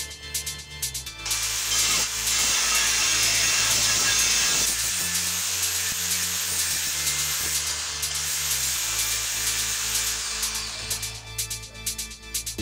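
Angle grinder's disc grinding into a steel plate clamped in a vise: a steady, harsh hiss that starts about a second in and eases off shortly before the end. Background music with a steady beat runs underneath.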